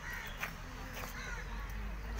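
Three short bird calls, like crows cawing, over a steady low background rumble.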